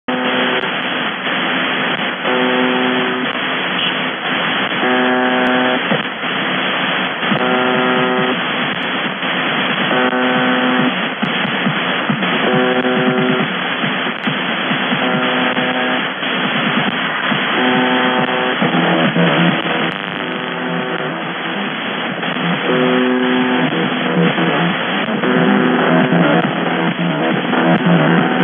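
UVB-76, 'The Buzzer', the Russian shortwave station on 4625 kHz, sounding its buzz tone received over shortwave: a coarse buzz lasting about a second, repeated about every two and a half seconds, over steady static hiss.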